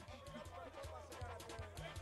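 Quiet background music over a steady low hum.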